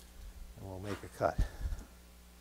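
A man's brief speech over a faint, steady low hum.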